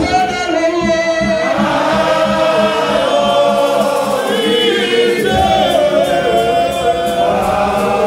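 Several voices singing a gospel hymn together in long, held melodic lines, one man's voice led through a microphone.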